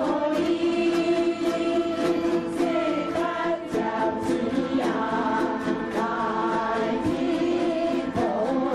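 A large chorus singing a Taiwanese folk song in unison on long held notes, over dozens of yueqin (long-necked moon lutes) strummed together on the beat.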